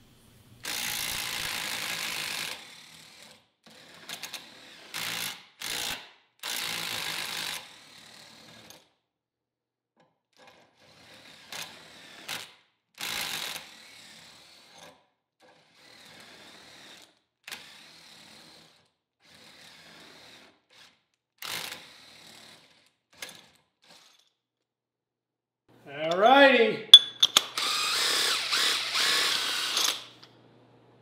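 Intermittent scraping and rubbing as a steel Acme lead screw is worked through a cast-iron vise screw box and wiped with a rag, in short bursts separated by quiet gaps. Near the end a small power tool spins up with sweeping tones and runs for a few seconds.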